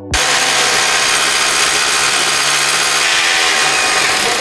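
Electric power drill boring holes into a wall, running steadily at full speed without a pause.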